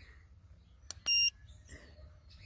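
Foxwell NT201 OBD2 code scanner: a button click followed by one short, high beep as it starts reading stored codes.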